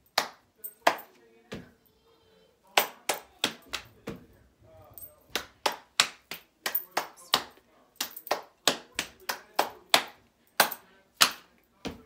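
Body percussion by one person: a string of sharp hand claps and pats on the lap, played in the uneven rhythm of a short rhyming poem whose words are mouthed rather than spoken.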